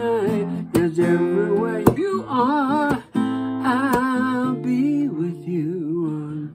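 A man singing long held notes with a wavering vibrato over a strummed acoustic guitar, a few hard strums standing out.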